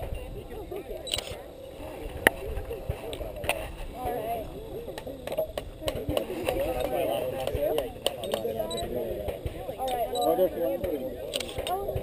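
Indistinct talk of several people, unclear enough that no words come through. A few sharp clicks cut through it, the loudest a single crack about two seconds in.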